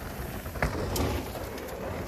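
Low rumble of wind on the microphone with two brief dull thuds, about half a second and a second in, fitting a mountain bike touching down off a dirt jump.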